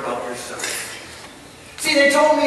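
A man's voice preaching, picked up by a headset microphone in a hall. He speaks a short phrase, pauses, and starts again near the end.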